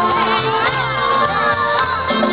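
A live norteño band plays dance music with steady held chords and a pulsing bass. Loud crowd voices and shouts run over it.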